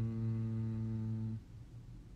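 A man's voice holding one steady, low "mmm" hum with closed lips while thinking of an answer. It cuts off about one and a half seconds in, leaving faint room tone.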